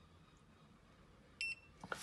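A single short, high electronic beep from a Proteam Inverter iX pool heat pump's wall controller about one and a half seconds in, as its power button is held down to release the keypad lock.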